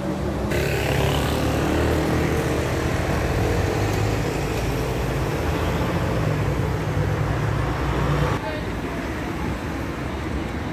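City street ambience: road traffic with engines running steadily and people's voices mixed in. The sound changes abruptly about half a second in and again after about eight seconds.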